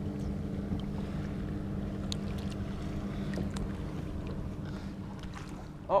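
Steady low mechanical hum from the boat, easing off slightly near the end, with a few faint water drips and splashes as a bass is held in the lake to be released.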